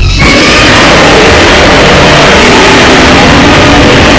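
A recreated Godzilla roar, very loud and harsh, more rasping noise than clear pitch, held without a break.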